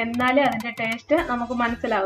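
A voice singing over background music, holding long notes. No cooking sound stands out over it.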